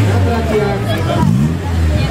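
A Honda Civic Type R rally car's engine running steadily at low revs as the car rolls slowly off the start ramp, with crowd chatter and a voice over it.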